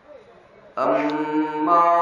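A man's voice chanting Arabic in a long held melodic line, coming in just under a second in and stepping up in pitch partway through.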